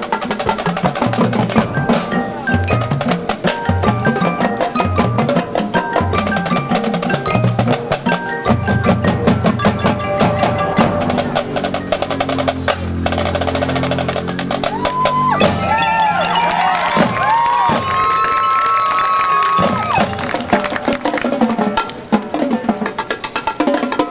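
Marching band playing a percussion-led passage: the drumline's quick rhythmic strokes and the front ensemble's mallet percussion. About eight seconds in, held low notes take over, and later pitched notes slide up and down over them.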